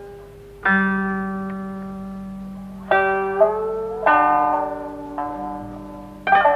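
Koto and shamisen playing a slow passage of single plucked notes in traditional Japanese jiuta music. Each note rings and fades, about five in all, and one note is bent upward in pitch about three and a half seconds in.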